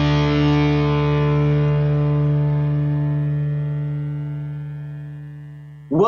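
Final chord of a heavy rock song on distorted electric guitar, held and slowly fading away as the song ends.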